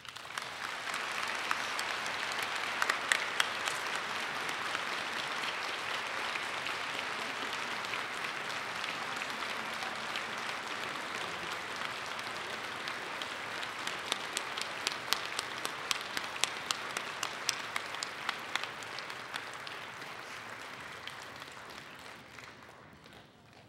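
Sustained applause from a large audience, starting abruptly and holding steady, with sharper individual claps standing out in the second half before it dies away near the end.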